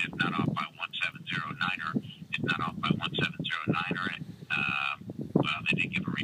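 A man's voice heard through a mobile phone on speaker, talking continuously. About four and a half seconds in it holds a drawn-out 'uhhh'.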